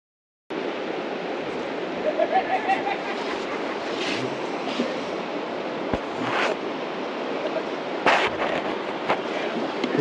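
Steady rushing noise of river water and wind on an open-air microphone, starting suddenly about half a second in, with a few short knocks.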